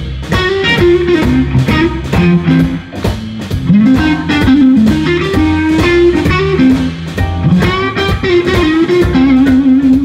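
Live blues band playing: a Stratocaster-style electric guitar plays bending lead lines over organ and a steady drum beat.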